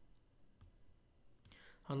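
Two faint computer mouse clicks about a second apart, made while selecting a browser developer-tools tab.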